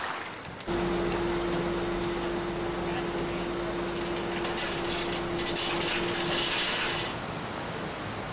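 A boat's engine running with a steady hum as the boat tows trawl nets, over the rush of water in its wake; it starts abruptly under a second in. About halfway through, a louder hiss of water joins for a couple of seconds.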